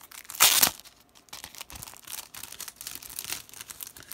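Sticker sheets and their packaging rustling and crinkling as they are handled, with one loud, brief rustle about half a second in and small crinkles after it.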